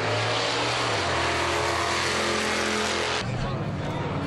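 Racing engines at a drag strip heard from the grandstand, loud and steady, with a sudden change in the sound about three seconds in.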